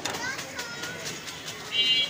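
Street ambience with people's voices and children's shouts in the background, and scattered small clicks and rustles; a short high-pitched call stands out near the end.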